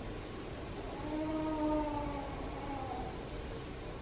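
A woman in labour moaning through a contraction: one long held vocal tone of about two seconds, starting about a second in, rising slightly and then falling away.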